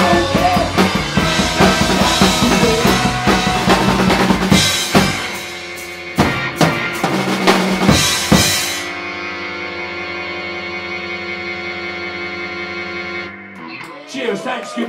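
Rock band playing live, electric guitar and drum kit: full band at first, then about five seconds in a run of separate drum hits. From about nine seconds the song's final chord is held, ringing steadily for about four seconds before cutting off near the end.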